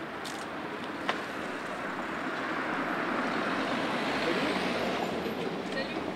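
Street traffic noise from a passing vehicle, swelling to a peak about four seconds in and then easing off. A short click sounds about a second in.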